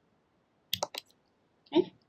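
A quick cluster of a few sharp clicks about three-quarters of a second in, from the presenter's computer as the presentation slide is advanced. A short breath or mouth sound follows near the end.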